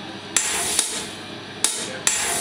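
Sharp, hammer-like noisy strikes from a live experimental band's stage rig, three in quick irregular succession, each fading into a hiss.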